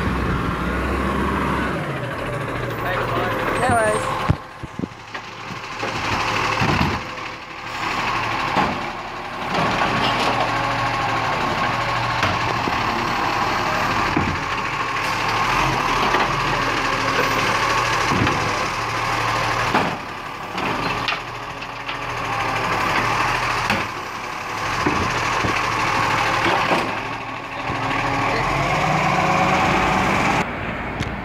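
Side-loading garbage truck working at the kerb, its engine and hydraulics running steadily, with several sharp knocks as the arm grabs and handles the wheelie bins.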